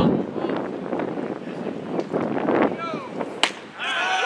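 Background chatter of players and onlookers calling out around a baseball field, with a light breeze on the microphone and one sharp clack about three and a half seconds in.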